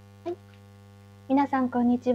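Steady electrical mains hum on the recording line, with a brief short sound about a quarter second in and a woman beginning to speak in the last half second.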